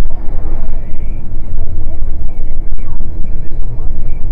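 Truck's engine and road rumble heard from inside the cab while driving, a loud, steady, deep drone.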